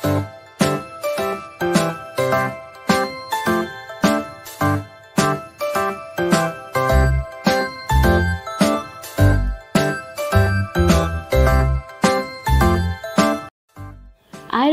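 Background music: a melody of short struck notes over a bass line, a few notes a second. It cuts off suddenly shortly before the end.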